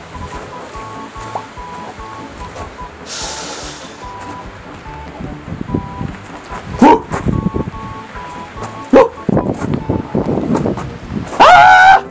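Sparse, eerie background music of high held notes, broken by a hiss about three seconds in and two sudden loud rising sounds around seven and nine seconds in. Near the end a man lets out a loud scream of fright.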